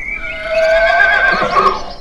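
Zebra giving one long whinny-like call, its pitch quavering throughout.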